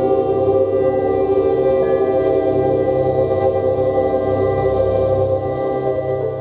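Live ambient meditation music from several musicians: layered, sustained drone tones held steady, over a slow pulsing low throb.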